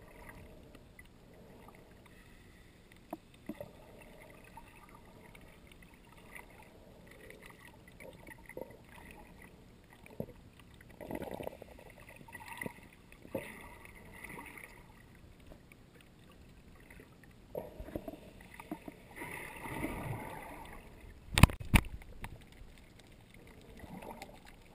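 Muffled water sound picked up by a camera in its waterproof housing underwater as a snorkeler swims: faint swishing and gurgling that swells now and then, with two sharp knocks about two and a half seconds before the end.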